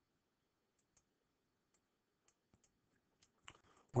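A handful of faint, scattered computer mouse clicks, about eight over the few seconds.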